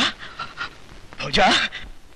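A man's breathy, gasping cries of distress, with no clear words: one trails off at the start, and a louder one comes about a second and a half in.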